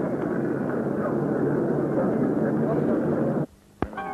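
Busy city street ambience: a dense wash of traffic noise with indistinct voices mixed in. It cuts off suddenly about three and a half seconds in, followed by a brief near-silence and a single click.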